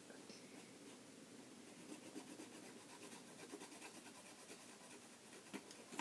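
Faint scratching of someone drawing on paper, in quick irregular strokes, with one small click near the end.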